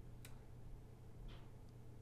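Near silence: room tone with a steady low hum and one faint, sharp computer-mouse click about a quarter of a second in, followed by a softer brief noise just after a second.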